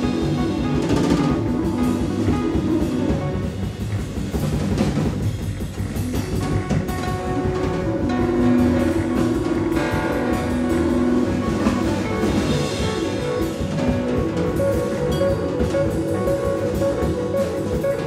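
A jazz piano trio playing: keys, plucked upright double bass and drum kit together.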